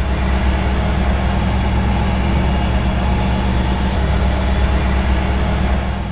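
Engine of a 1957 Ford Fairlane 500 Skyliner idling steadily, a low even hum that fades in at the start and fades out near the end.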